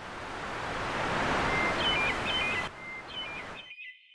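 A swelling rush of noise, like wind or surf, builds to a peak in the middle and cuts off near the end. From about halfway, a bird's whistled notes step up and down between pitches over it and carry on briefly after the rush stops.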